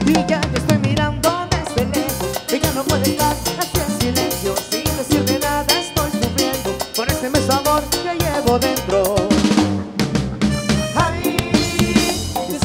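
Live tropical dance band playing an instrumental passage with a steady dance beat on drum kit and percussion, with saxophones, trumpet and electric guitar.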